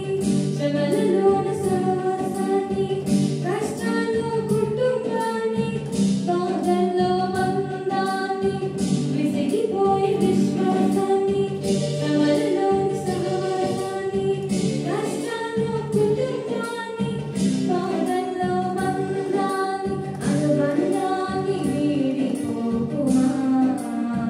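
A girl singing a song with electronic keyboard accompaniment, held melodic notes over a steady rhythm beat.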